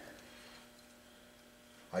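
Quiet room tone with a faint steady electrical hum; a single word of speech starts at the very end.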